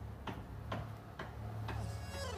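Faint, even ticking, about two ticks a second, like a steady percussion beat.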